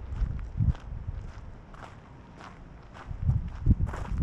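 Footsteps walking at a steady pace on a gravel path, crunching about twice a second, with a low rumble underneath.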